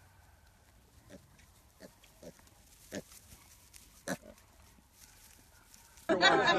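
Pigs giving about five short, faint calls spread over a few seconds, the loudest about four seconds in.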